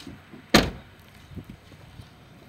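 A car door slamming shut with a single loud thunk about half a second in.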